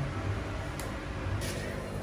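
Quiet, steady background hum with two faint, brief rustles a little over half a second apart.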